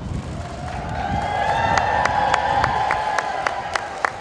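A large crowd cheering and applauding, swelling in the first second. From about halfway a regular series of sharp, ringing strikes, about three a second, cuts through the cheering.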